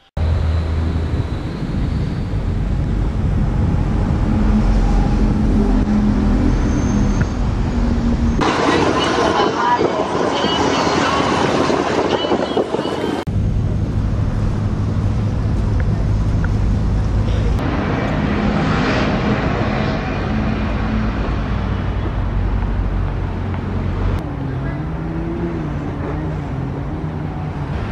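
Outdoor traffic and engine noise with a steady low rumble and people talking in the background. The mix changes abruptly several times.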